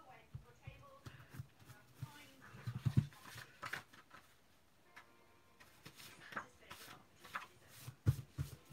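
A Pentel Hi-Polymer eraser rubbing on a white card panel, then the panel being picked up and handled, with irregular soft rustles and a few light knocks on the desk.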